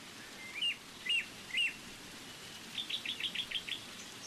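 Birdsong played as a stage sound effect: three rising chirps about half a second apart, then a quick run of six or seven short notes, over a steady hiss.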